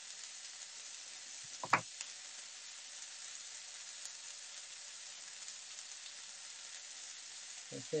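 Chicken and plum slices sizzling steadily as they stir-fry in a pan, with one brief sharp sound a little under two seconds in.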